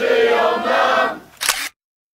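Song with choir-like singing that fades out about a second in, followed by a single camera shutter click used as a sound effect, after which the sound cuts off.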